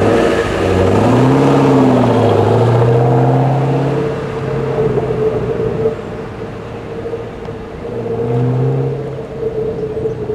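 Supercharged V8 of a 2010 Ford Mustang Shelby GT500 revving hard under acceleration, then easing off, and pulling up again near the end.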